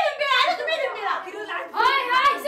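Speech only: a person talking animatedly, with no other sound standing out.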